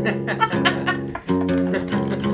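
Yamaha acoustic guitar strummed twice, about a second and a half apart, its chords ringing on between strums. The guitar is out of tune.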